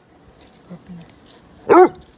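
Basset hound giving a single loud, short bark near the end, one of a run of barks a second or so apart.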